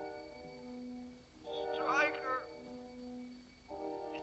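Film score of low, sustained held chords, with a man's distant, strained call rising over it about two seconds in: a wounded Marine calling out "Stryker!" from the dark.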